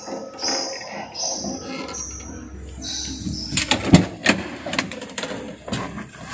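Clicks and knocks from the rear hatch of a car being opened and handled, the loudest knock about four seconds in, after a few short high-pitched sounds in the first half.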